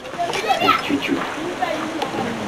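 Indistinct talking over a steady background hiss.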